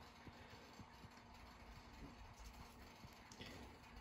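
Near silence: room tone with a few faint, light clicks of plastic model-kit parts being handled.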